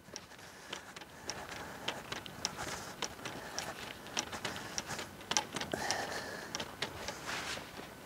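Faint, irregular clicks and taps of golf clubs knocking together in a carried stand bag as the golfer walks, over a light hiss of wind. A short, steady high tone sounds about six seconds in.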